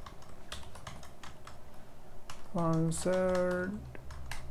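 Computer keyboard typing: a run of quick key clicks as a short line of text is typed. A man's voice, held on one steady pitch, sounds for about a second past the halfway mark.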